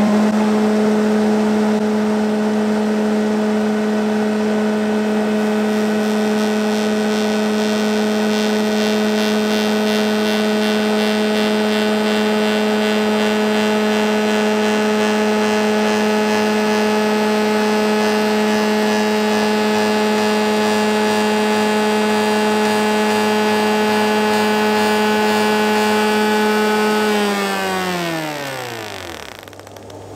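Spindle moulder spinning a large cornice profile cutter block free in the opening of a sacrificial fence: a loud, steady whine with several even tones. About 27 seconds in it is switched off, and the pitch falls away as the spindle runs down to a stop.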